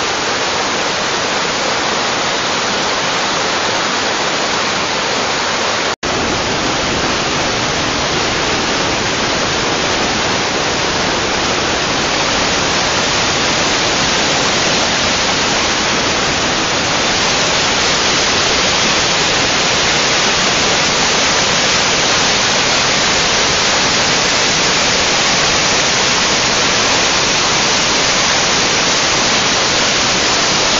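Mountain stream rushing over rapids and small cascades between boulders: a loud, steady rush of whitewater. It breaks off for an instant about six seconds in.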